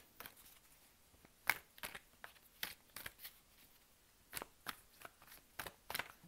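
A tarot deck being shuffled by hand: a series of irregular, quiet card snaps and clicks, the sharpest about a second and a half in.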